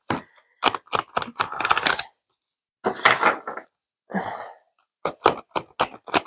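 A deck of oracle cards being shuffled by hand, in several short bursts of rapid card flicks with brief pauses between.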